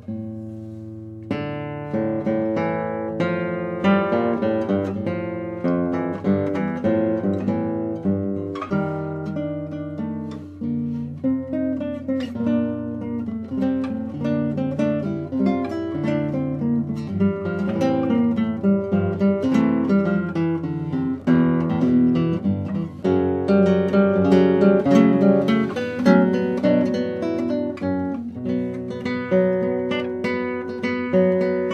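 Solo acoustic guitar playing a movement of a contemporary classical guitar sonata: a continuous flow of plucked notes and chords, growing louder in the second half.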